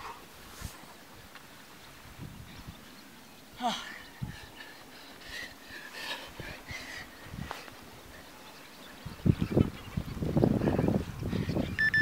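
A man breathing hard while sprinting on sand. The breathing is faint at first and turns loud and ragged about nine seconds in.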